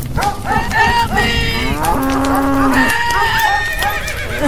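A cow mooing, one long low call about two seconds in, among overlapping higher-pitched animal calls.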